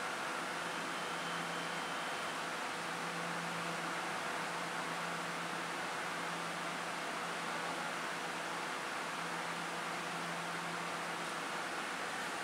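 Steady machinery hum and hiss with a low steady tone at an underground platform where a stationary EMU700 electric train waits to depart: the standing train's on-board equipment and the station's ventilation running.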